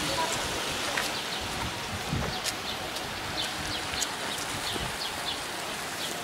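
Rain falling on wet asphalt: a steady hiss with scattered sharp drop ticks.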